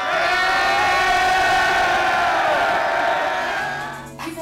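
Concert crowd cheering and screaming, many voices at once, dying down near the end.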